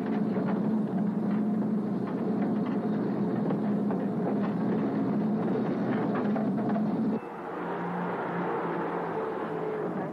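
Army lorry engine running and road noise as the truck drives, heard from the open back of the lorry. The sound steps down a little quieter about seven seconds in.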